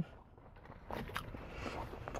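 Soft rustling of a paper food wrapper or bag being handled as a sandwich is picked up. It starts about a second in, with a couple of light clicks.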